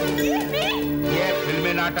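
Sustained background music under short, rising cries and shouting voices from a struggle between a man and a woman.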